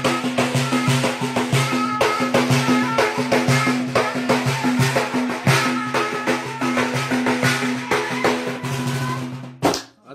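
Live folk music: a frame drum beaten in a fast, steady rhythm under a flute holding long, stepping notes. The music stops suddenly just before the end.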